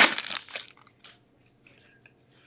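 Shiny plastic wrapper of a hockey card pack crinkling as it is pulled off the cards, dying away under a second in, followed by a few faint ticks of cards being handled.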